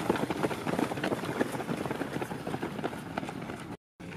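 Footfalls of a pack of runners on a dirt track, many overlapping quick strides. The sound cuts off abruptly just before the end.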